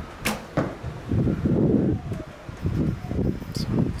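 A longbow loosing a carbon arrow: one sharp snap of the string about a third of a second in, followed quickly by a second, fainter click. A low, uneven rumbling noise runs underneath, loudest from about one to two seconds in.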